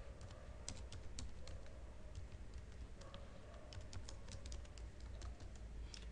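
Faint computer keyboard typing: irregular runs of key clicks as an ssh login command is entered at a terminal.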